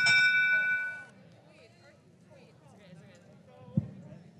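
Electronic match-timer signal ending the autonomous period: a steady chord of several high tones that cuts off about a second in. Faint chatter follows, with a single knock near the end.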